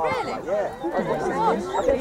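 Only speech: several people chatting at once, their voices overlapping.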